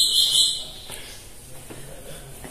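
A bird calling with one high, steady, buzzy trill lasting just under a second, fading out by about half a second in.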